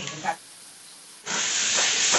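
Curry masala sizzling loudly in a hot kadai as a ladle stirs it, starting abruptly about a second in. A short bit of voice sits at the very start.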